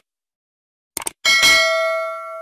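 Sound effect of a subscribe-button animation: a quick mouse click about a second in, then a bright bell-like notification ding that rings on and fades.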